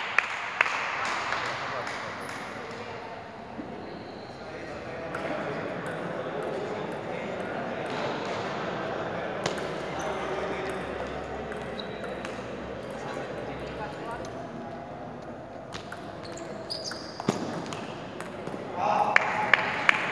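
Table tennis balls clicking off bats and the table, scattered sharp ticks over the steady murmur of voices in an echoing sports hall, with a louder burst near the end.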